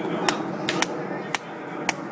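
A run of about five sharp, short knocks at uneven spacing over two seconds, over steady background noise.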